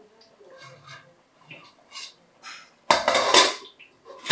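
Metal cooking-pot lid handled with a cloth: a few faint clinks, then about three seconds in one loud clattering scrape of metal on metal lasting under a second.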